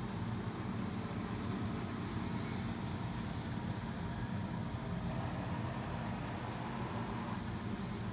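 Steady low background rumble of room noise, with a brief faint rustle about two seconds in and another near the end.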